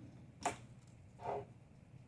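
A single sharp click about half a second in, then a softer, brief handling sound, from hands working with a hot glue gun and ribbon at a table.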